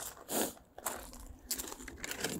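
Footsteps crunching on loose gravel: a few irregular steps.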